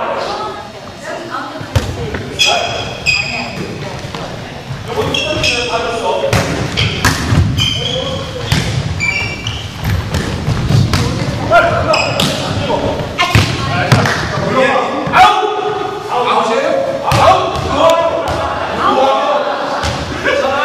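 A volleyball being struck by hands and bouncing on a hardwood gym floor: sharp slaps and thuds many times, with players' voices and shouts echoing in the gym hall.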